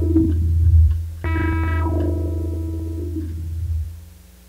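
Experimental music: a steady low synthesizer bass tone under struck, ringing string tones from a piezo-miked glass box strung with guitar strings, fed through a delay pedal. A new struck tone comes in a little over a second in and fades away toward the end.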